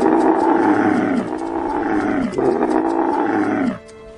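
Dromedary camel bellowing in three long, deep calls, one after another, each dropping in pitch at its end.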